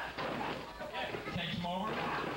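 A wrestler's body lands on the ring mat with a thud right at the start, amid shouting and chatter from voices in the hall.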